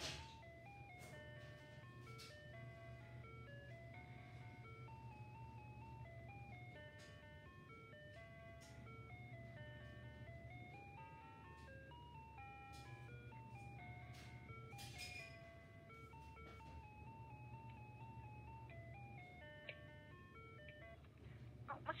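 Telephone hold music: a simple electronic melody of single stepping notes, faint and thin, heard through a recorded phone call played back on a smartphone.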